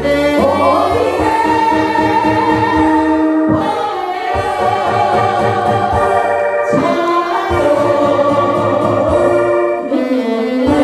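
A group of singers singing a Korean popular song together over a backing track with a steady beat.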